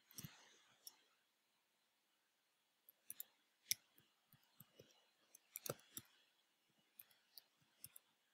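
Faint computer keyboard typing: a few key clicks right at the start, a short lull, then an irregular run of keystrokes from about three seconds in.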